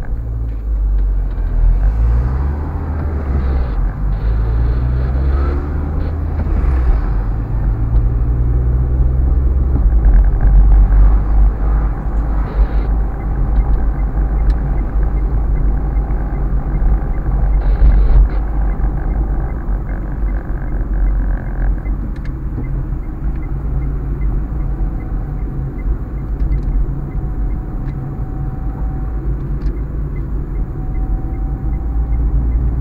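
Car engine and road rumble heard from inside the cabin as the car pulls away from a stop. The engine note climbs several times in the first eight seconds or so, then settles into a steady low drone while cruising.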